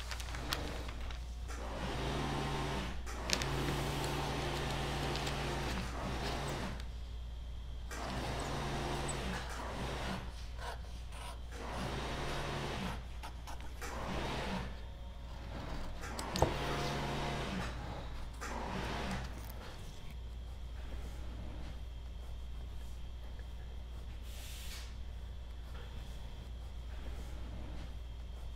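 Scissors cutting through pattern paper in several long, crunchy passes of a few seconds each, with a few sharp clicks and some paper rustling, ending with paper being gathered up. A steady low hum runs underneath.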